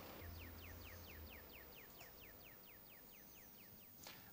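Near silence with a faint bird call: a rapid series of about fifteen short, high, falling whistled notes, about five a second, that stop about three seconds in.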